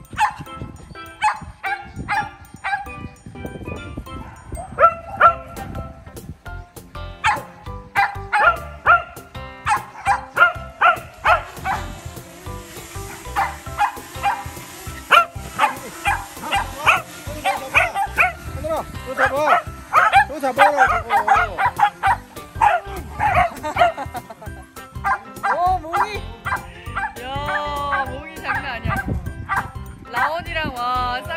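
A pack of corgis barking and yipping in many short, rapid bursts, with a few drawn-out wavering whines near the end.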